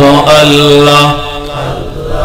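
A man's voice chanting a long held note in a devotional Islamic zikr, the drawn-out repetition of 'Allah'. The note drops away about a second in.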